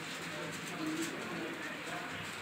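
Steady background noise with faint, indistinct voices, with a few faint short low tones about a second in.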